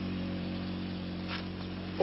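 A steady low hum made of several held tones, with no other clear sound.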